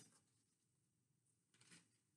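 Near silence: room tone, with one faint, brief sound near the end.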